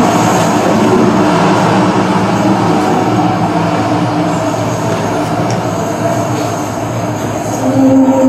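Loud, dense rumbling drone from the performance soundtrack, with faint held tones in it, easing slightly toward the end; music with clear held notes comes in just before the end.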